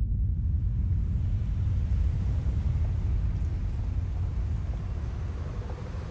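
Low, steady rumble of city street traffic, easing off slightly near the end.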